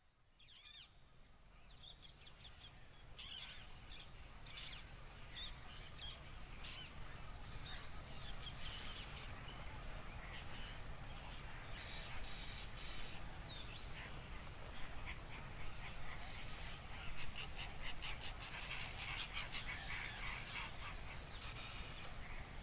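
Quiet outdoor ambience fading in: scattered bird chirps and calls over a steady low rumble, growing busier in the second half.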